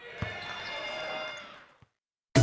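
A basketball bouncing on a gym floor, one sharp thud about a quarter second in and a faint one near the end, over gym room sound that fades away.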